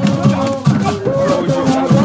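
Voices singing over rattles shaken in a fast, even beat.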